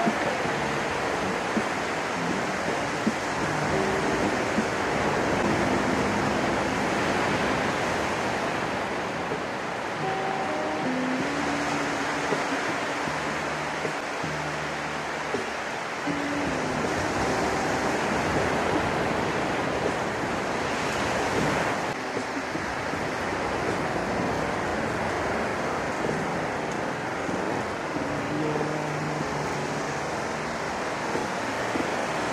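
Ocean surf washing steadily onto the beach, with background music of held, changing notes playing over it.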